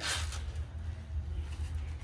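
A short swishing rustle right at the start, the movement of a demonstrated body punch, then only a steady low hum of the gym's fans.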